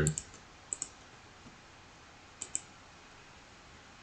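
Two double-clicks of a computer mouse, about a second and a half apart, each a quick pair of sharp clicks.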